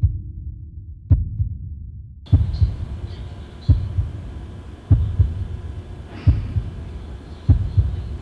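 Heartbeat sound effect in a suspense soundtrack: low double thumps, lub-dub, repeating about every 1.2 seconds.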